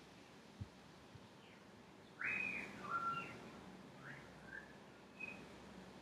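A bird calling: a burst of short whistled chirps about two seconds in, followed by a few brief chirps. A soft knock comes just before.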